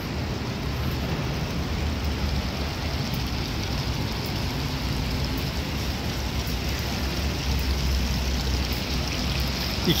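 Steady rushing and splashing of water from a rooftop pool's water feature, with a low rumble underneath throughout.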